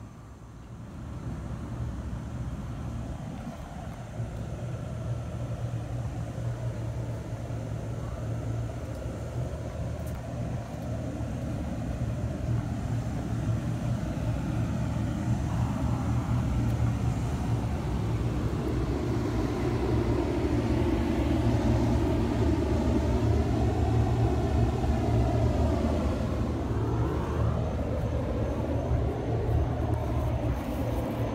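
Steady low mechanical rumble that grows louder over about twenty seconds and eases slightly near the end, its upper tone slowly wavering.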